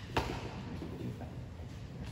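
A single sharp slap of a body or hand hitting the wrestling mat about a fifth of a second in, followed by faint scuffing as two wrestlers grapple on the mat.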